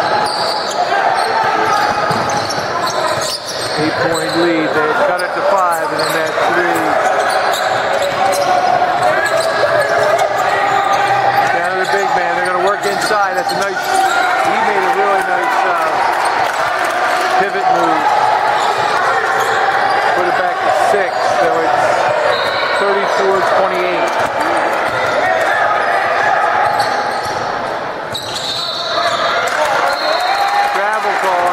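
A basketball bouncing on a hardwood gym floor during play, under continuous overlapping voices from players and onlookers, all echoing in a large gym.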